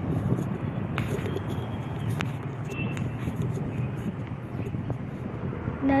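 Steady low background rumble, like outdoor ambience, with a few light clicks.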